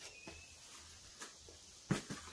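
Quiet with a few faint taps and one sharper click near the end, from the phone being moved as the view pans away.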